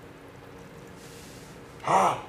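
Quiet room with a faint steady hum, then near the end a short, loud vocal outburst from a man.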